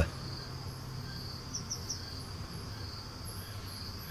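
Crickets chirping in a steady high trill, with three short separate chirps about a second and a half in, over a low steady hum.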